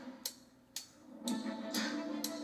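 Newton's cradle steel balls clicking against each other about twice a second, in a movie trailer's soundtrack, with music fading in after about a second.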